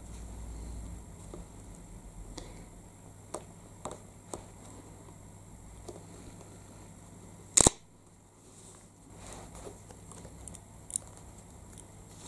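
Faint handling ticks of a clear acrylic stamping block and clear stamp on paper and the desk, with one loud sharp click about two-thirds of the way through.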